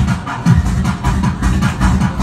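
Loud electronic dance music played live through a PA system, with a heavy kick drum hitting in a steady pattern under a busy mid-range synth line.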